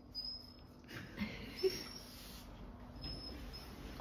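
Young Doberman whining faintly in a few short, high-pitched whimpers, one of them rising in pitch.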